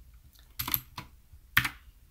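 Typing on a computer keyboard: a handful of separate keystrokes, the loudest pair about one and a half seconds in.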